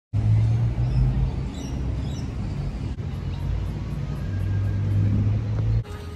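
Steady low rumble and hum of a car in motion, heard from inside the cabin. It starts just after a moment of silence and cuts off abruptly shortly before the end.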